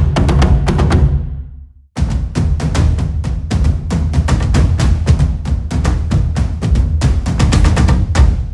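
World drum ensemble from the Colossal Hybrid Drums sample library, heavily processed and played from a keyboard. A burst of deep, booming drum hits stops short just before two seconds in. Then a fast, dense rhythm of hits runs on, ringing out near the end.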